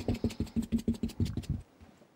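Oil-paint brush bristles scrubbed quickly against a paper towel to clean off the paint, in short scratchy strokes about eight a second that stop about one and a half seconds in.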